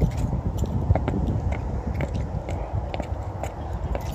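Wind buffeting the microphone in a continuous low rumble, with a scatter of short sharp clicks and taps about twice a second.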